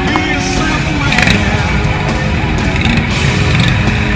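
Motorcycle engines running as several bikes ride slowly past in close street traffic, with music playing over them.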